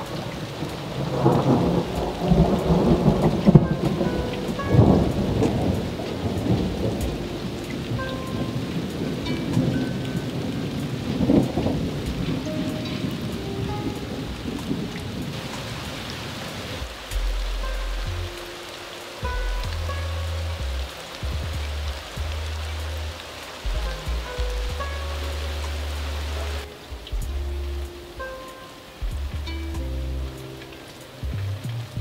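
Thunder rolling over steady, heavy rain: loud rumbles in the first half, strongest with sharp cracks about four and five seconds in and again around eleven seconds, then the thunder fades while the rain goes on. From about seventeen seconds a low steady drone comes and goes in abrupt blocks under the rain.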